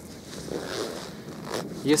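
Fabric and plastic rustling as hands handle a small half-litre plastic bottle against a synthetic winter jacket: a soft scraping swell with one sharper scrape near the end.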